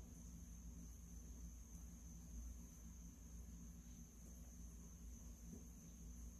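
Near silence: room tone with a low steady hum and a faint steady high whine.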